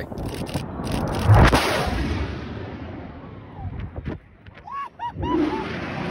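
Jet aircraft making a very low, high-speed pass: a sudden loud roar about a second and a half in that dies away over the next few seconds.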